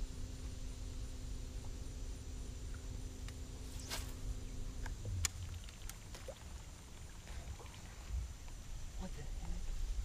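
Bow-mounted trolling motor humming steadily, cutting off about halfway through, under a low wind rumble on the microphone. A few sharp clicks and a brief swish come from rod and reel handling during a cast.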